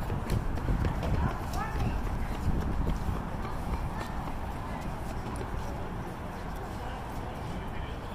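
A group of children's voices calling out at a distance, over quick scattered taps and knocks like running footfalls, with a low rumble; busier and louder in the first few seconds.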